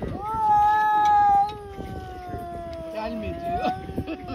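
A tabby cat gives one long, drawn-out yowl, loud for the first second and a half, then sliding a little lower in pitch and holding on. It is a territorial warning aimed at another cat coming near its spot.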